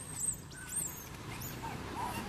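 Macaques giving several short, very high-pitched squeals that rise and fall, the loudest about a quarter second in. A steady low rumble runs underneath.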